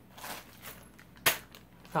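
Plastic bag of desk assembly hardware being picked up and handled: soft rustling, then one sharp crinkle a little over a second in.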